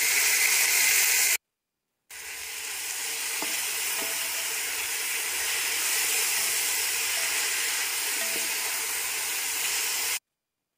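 Sliced tomatoes sizzling as they fry with onions and green peppers in hot ghee and olive oil in a large metal pot, stirred with a wooden spoon. The sizzle is loudest in the first second and a half, breaks off for under a second, then carries on steadily with a few faint spoon scrapes.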